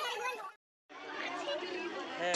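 Crowd chatter: many children's and adults' voices talking over one another, none standing out. About half a second in, the sound drops out completely for a moment at an edit.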